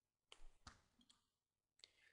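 Near silence with a few faint computer-mouse clicks, a small cluster in the first second and one more near the end.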